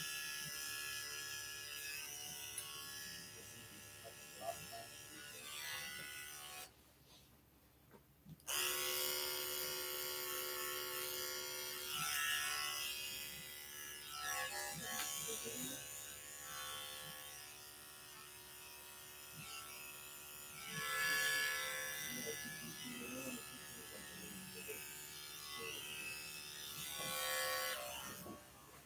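Electric dog grooming clippers running with a steady buzz while trimming a Yorkshire terrier's head, with a gap of about two seconds near the start.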